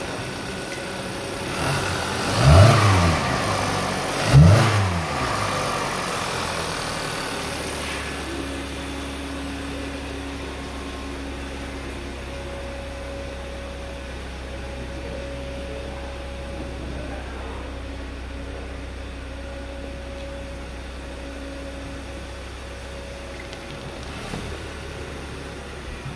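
2014 Hyundai Santa Fe's 2.4-litre four-cylinder engine revved briefly twice, a couple of seconds apart, then idling steadily.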